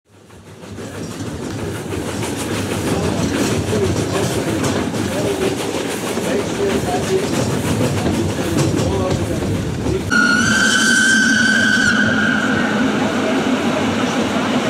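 Train running noise, fading in at the start, with light rhythmic wheel clicks. About ten seconds in the sound cuts to a train horn held for nearly three seconds over a steady low hum.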